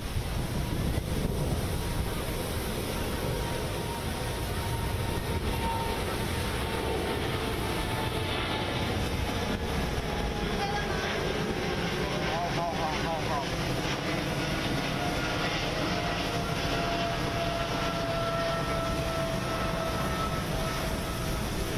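Jet aircraft engine noise on an airport apron: a steady rumble with a thin, high whine that slowly falls in pitch.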